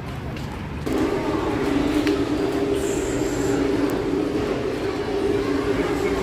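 A loud, steady mechanical drone holding two low notes, starting abruptly about a second in, with a brief faint high whine in the middle.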